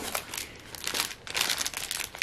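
Plastic packaging crinkling and rustling in irregular bursts as items in plastic sleeves are handled, loudest about one and a half seconds in.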